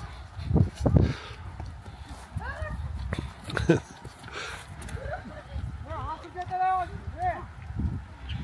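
Voices calling out across an open field in short rising-and-falling shouts, one about two and a half seconds in and several close together near the end, over a low outdoor rumble.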